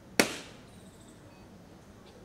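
A single sharp bang about a fifth of a second in, dying away within a few tenths of a second.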